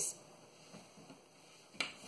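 Quiet room tone, with one short sharp click near the end.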